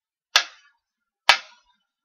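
Mechanical pyramid metronome ticking at about one beat a second: two sharp clicks.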